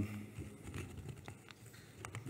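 Handling noise from a head-worn microphone being re-seated by hand: irregular faint rustles and small taps. The microphone had slipped out of place.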